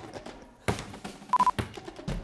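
A basketball bouncing on a hard showroom floor, two bounces about a second apart, with a short, steady high beep just before the second.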